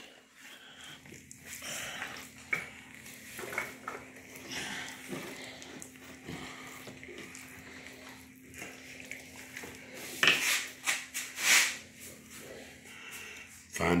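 Wet handling of a large catfish carcass on a table as it is turned over and pressed flat: soft squelching and sliding of slick fish skin and flesh, with two louder wet sounds about ten and eleven and a half seconds in. A faint steady low hum runs underneath.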